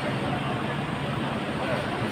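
Steady background hubbub of a waiting crowd: indistinct voices of people gathered nearby over a low, even hum of ambient noise.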